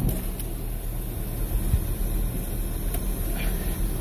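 A 2019 Ford Flex's power sunroof sliding back, a steady low hum heard from inside the cabin.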